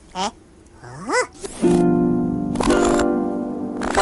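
Cartoon soundtrack: a character's short wordless vocal yelp, then a second one that rises and falls in pitch about a second in. About a second and a half in, music enters as a loud held chord that lasts to the end.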